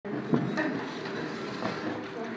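Chairs being moved and people settling at a table, a continuous rumbling shuffle with a sharp knock about a third of a second in and a few lighter knocks after.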